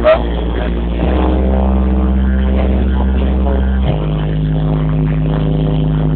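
Dance music played loud through a sonido's PA system: held chords over a sustained bass note that shifts about a second in and again near four seconds. A brief knock comes at the very start.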